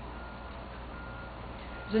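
Faint high electronic beeps, three short tones about half a second to a second apart, over a steady low hum.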